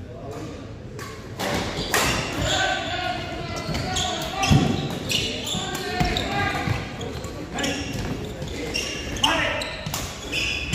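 Badminton doubles rally in a large hall: sharp smacks of rackets hitting the shuttlecock and players' footfalls on the court, irregularly spaced. People's voices talk and call out through most of it.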